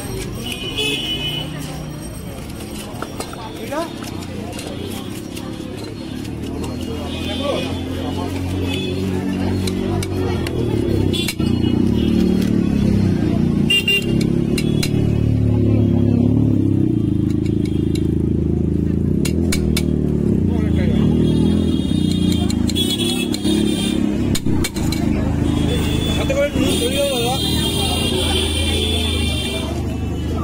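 Busy roadside street noise: traffic with horn toots and people's voices, mixed with music, steady and fairly loud throughout.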